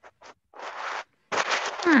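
A few short bursts of scratchy noise, then about half a second of hiss-like scratching, with breathy sound and a voice starting near the end.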